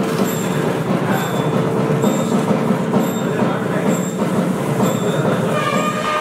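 Temple festival percussion: dense, fast drumming with a small high cymbal or bell struck about once a second, and a held reed note in the first two seconds.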